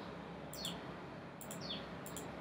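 Faint steady background noise of the recording room with two short, high-pitched falling chirps, one about half a second in and another about a second later.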